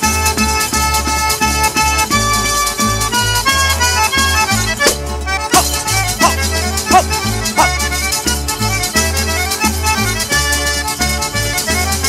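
Instrumental passage of a Calabrian tarantella: an accordion plays held and moving melody notes over a steadily pulsing bass.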